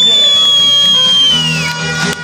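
Live band music with a high lead note that slides up, holds for about a second and a half, and bends down as it ends.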